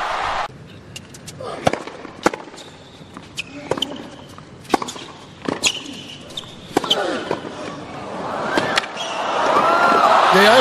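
Tennis ball bounces and racket strikes on a hard court, heard as sparse sharp knocks over a hushed stadium crowd. The crowd noise swells steadily over the last couple of seconds as the rally goes on.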